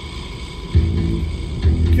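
Rock music playing on the car radio inside the cabin, with two heavy low notes: one about a second in and another near the end.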